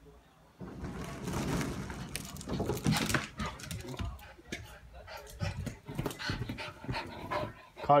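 Excited small dog panting hard and scrambling about, with scuffling and rustling, starting about half a second in.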